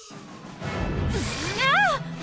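Cartoon fight sound effects: a low, rough rumble builds up, and near the end a girl's voice cries out once, rising and falling in pitch, over music.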